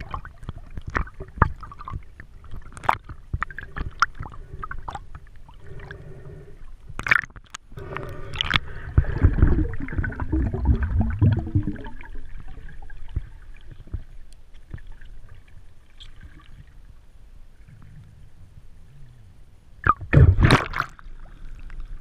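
Underwater sound picked up by an action camera in its housing: scattered sharp clicks and water movement, with a louder rush of water noise about eight seconds in. Near the end a loud burst of splashing as the camera breaks the surface.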